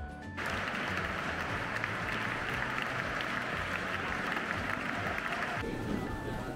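Audience applauding in a cathedral, a dense patter of many hands that starts about half a second in and cuts off suddenly just before the end. A light music track with bright single notes plays before and after the applause.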